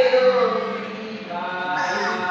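A woman singing into a microphone, slow held notes that slide gently in pitch.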